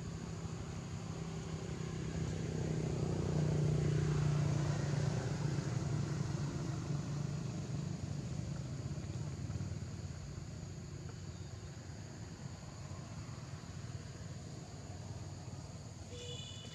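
A low motor-vehicle engine drone that grows to its loudest about four seconds in, then slowly fades away.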